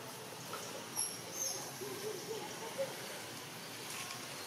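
Quiet outdoor background with a steady hiss, a few brief high chirps about a second in, and a faint wavering call around two seconds in.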